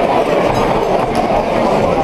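Spectators at a boxing bout shouting and cheering, a dense, steady crowd noise.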